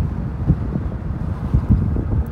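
Low rumble of a car driving slowly, with wind buffeting the microphone and a few bumps.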